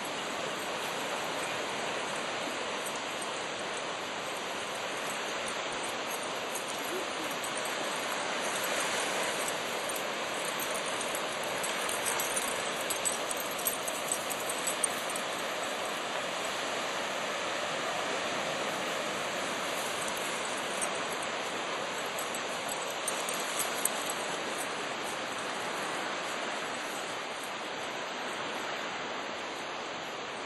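Steady rushing of surf breaking on the shore, with a few brief clicks in the middle.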